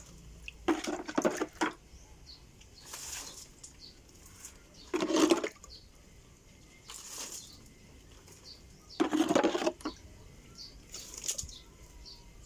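Water poured from a plastic dipper splashing onto potted plants and soil, in six bursts about two seconds apart, every other one louder.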